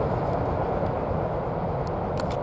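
Freight train's steady low rumble, fading slowly as it recedes down the line after passing.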